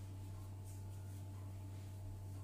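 Quiet room tone made up mostly of a steady low hum, with faint soft rubbing from yeast dough being rolled into a ball between the palms.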